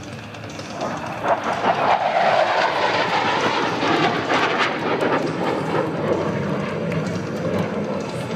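Engine noise of a USAF Thunderbirds F-16 jet making a low pass. It swells about a second in, sinks slightly in pitch as the jet goes by, and eases off in the second half.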